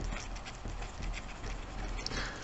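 Pen writing on a paper worksheet: a quiet run of short scratching strokes as a word is written out.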